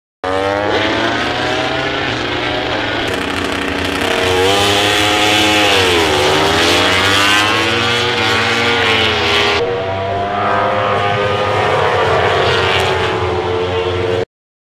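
MotoGP racing motorcycles at full song, their four-cylinder engines running at high revs as they pass. The engine pitch falls and climbs again through gear changes, with abrupt cuts between passes about three and ten seconds in.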